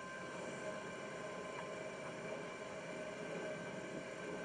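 Profisher E 12-volt electric net hauler running steadily just after being switched on, its motor and turning net drum giving an even hum with a thin, steady whine.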